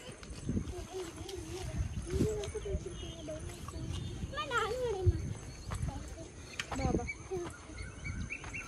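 People talking quietly, with irregular low thumps and rustling from a hand-held camera being carried.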